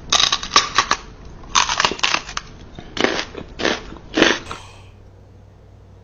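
Loud crunching bites, as of teeth biting into something crisp, in short bursts over the first four and a half seconds: the staged crunch of a man pretending to bite a dog's ear.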